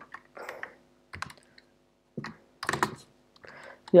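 Typing on a computer keyboard: a few scattered, irregular keystrokes, with a faint steady hum under them.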